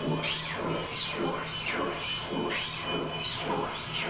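Electronic noise music from a rack of effects pedals: a steady low drone under a sweeping sound that falls and rises in pitch again and again, about every half second or so.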